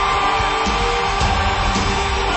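Radio station jingle music.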